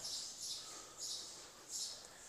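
Faint high-pitched chirping of small birds in three short spells, over low room hiss.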